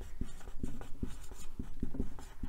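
Felt-tip marker writing on a white board: a run of short scratchy strokes and small taps as letters are written.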